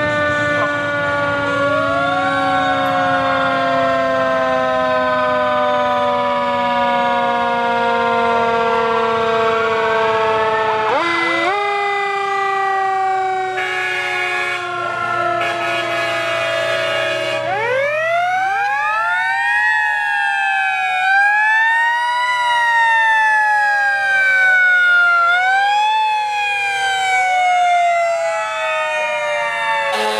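Sirens of several passing fire trucks wailing and overlapping. For the first ten seconds or so a long, slowly falling tone dominates. Then more sirens join, each rising quickly and falling slowly, again every two to three seconds.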